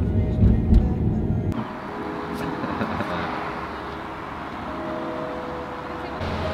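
Low road rumble of a car heard from inside the cabin while driving. After about a second and a half it cuts off suddenly to a steady, even hiss of outdoor noise with faint steady tones beneath.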